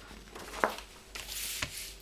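A large folded paper poster being unfolded and spread out on a wooden table: a sharp click about half a second in, then a rustle of paper sliding over the tabletop with a soft knock near the end.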